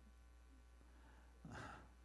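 Near silence, with one short breath drawn close to a handheld microphone about one and a half seconds in.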